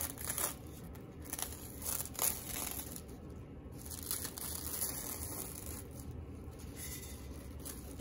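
Plastic cling wrap being peeled off a tumbler by gloved hands, crinkling and crackling in irregular bursts as it pulls away from the alcohol-ink coat, which is dry enough to peel.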